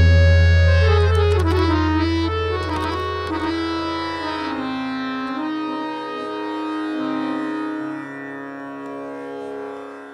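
Harmonium playing a few sustained closing notes that step in pitch and gradually fade out, over the low ring of the tabla's bass drum dying away after the final stroke of the solo.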